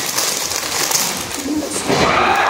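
Paper sandwich wrapper rustling and crinkling as it is handled and unwrapped.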